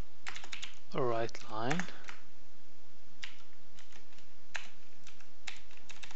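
Typing on a computer keyboard: irregular keystroke clicks, a quick run of them in the first two seconds, then sparser single taps. A short bit of voice is heard about a second in.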